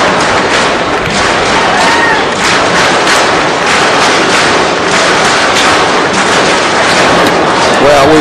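Baseball crowd in the stands making a loud, steady din of many voices, with claps and shouts mixed in throughout.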